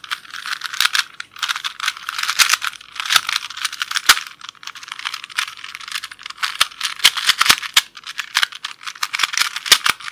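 Plastic Rubik's-type puzzle cube being twisted quickly close to the microphone: dense runs of sharp clicking and rattling as the layers turn, with short pauses between bursts of turns.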